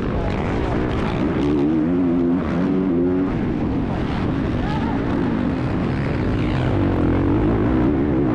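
Onboard sound of a 450cc four-stroke motocross bike racing, its engine revs rising and falling again and again as the throttle is worked over the rough track. Wind noise underlies it.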